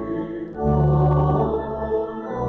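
Voices singing a sacred song with organ accompaniment, in long held chords over deep sustained bass notes. A louder chord comes in about half a second in.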